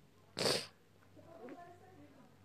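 A short breathy puff of air close to the microphone, lasting about a third of a second, followed by faint wavering pitched sounds in the background.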